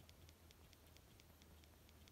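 Faint, quick clicks of a Polar Grit X sports watch's side button pressed over and over, about four or five a second, each press stepping a target-time value down by one.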